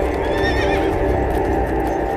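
A horse whinnies once, a wavering high call in the first second, over a steady low background.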